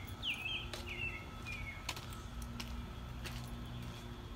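A few short bird chirps that slide in pitch during the first couple of seconds, over a faint steady low hum and a few light clicks.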